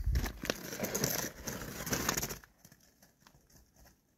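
Rustling, crackling noise with a low rumble for about two and a half seconds, then it stops and all is nearly quiet.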